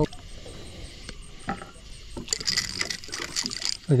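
A blue catfish being lifted out of the water alongside a boat: a few light knocks, then from about two seconds in a stretch of splashing and dripping water.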